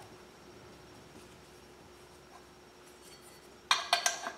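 Quiet room tone, then near the end a sudden sharp metallic clink and brief clatter as the steel pipe driving tool and oil pump pickup tube are handled against the cast oil pump body.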